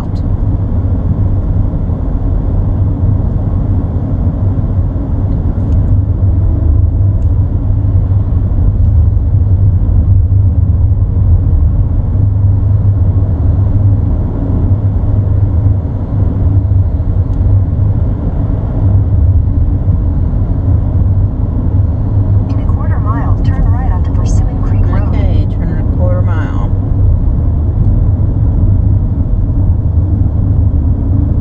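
Steady low rumble of a van's engine and tyres on the road, heard from inside the cabin while driving.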